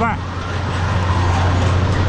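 A steady low machine hum from fairground equipment, with faint voices of people around it.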